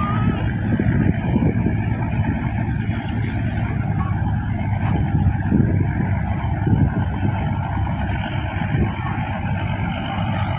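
Inboard engines of small motor launches running under way across open water: a steady low rumble that swells and eases a little.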